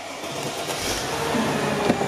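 Mercedes-Benz CLK320's 3.2-litre V6 being started: a rush of noise that builds, with a low thump about a second in, as the engine catches and runs.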